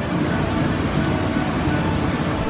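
A loud, low rumbling noise that sets in abruptly and holds steady.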